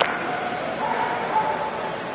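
A dog making a few drawn-out, high-pitched calls over a steady background murmur, with a sharp click right at the start.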